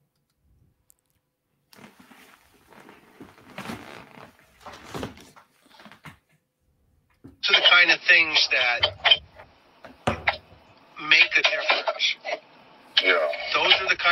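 Speech: a man's voice from a recorded phone interview being played back. It is silent for the first couple of seconds, faint until about seven seconds in, then loud and clear.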